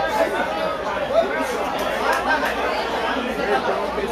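Crowd chatter: many people talking at once, no voice standing out.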